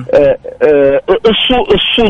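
Speech only: a man talking, the voice thin and phone-like.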